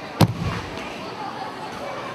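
A judoka thrown in a judo throw landing on the tatami in a breakfall: one sharp slap and thud about a fifth of a second in, the loudest sound here. Crowd chatter continues under it.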